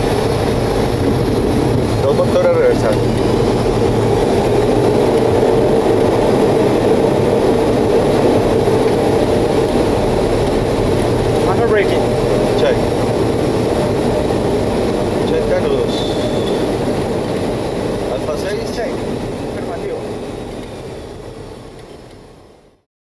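Steady engine and airflow noise on the flight deck of a Boeing 737 rolling on the runway. The noise fades out near the end.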